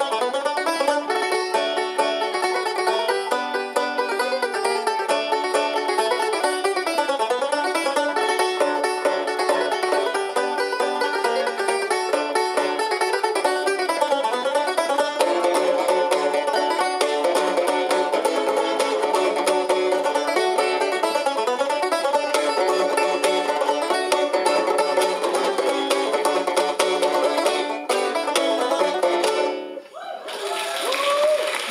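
Irish tenor banjos playing a tune live, a quick run of plucked notes, which stops just before the end.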